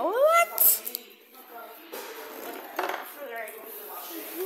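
A short rising meow-like call near the start, gliding up in pitch over about half a second. It is followed by rustling and a few soft bumps from the phone being moved about.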